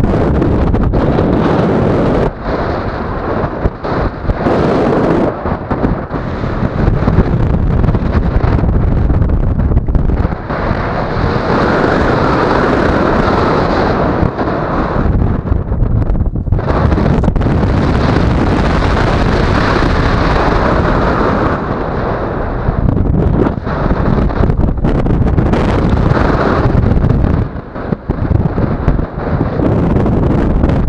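Airflow buffeting the camera microphone during a tandem paraglider flight: loud, gusting wind rush that swells and fades, with brief drops about two seconds in and again near the end.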